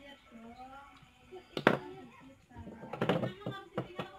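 Hands handling a plastic motorcycle speedometer cluster and small tools on a wooden table: one sharp knock about one and a half seconds in, then a short run of clattering and knocking.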